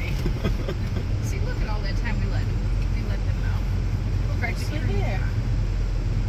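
Steady low rumble of a minivan's engine heard inside the cabin, with faint voices over it.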